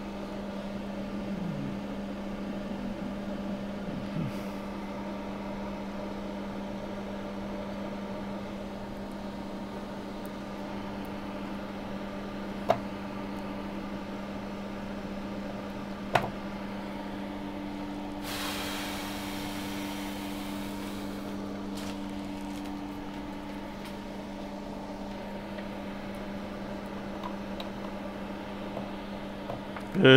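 Steady mechanical hum of a workshop fan or extractor. About thirteen and sixteen seconds in come two sharp clicks as a chip adapter is handled into the ZIF socket of a universal programmer, and soon after there are a few seconds of hiss.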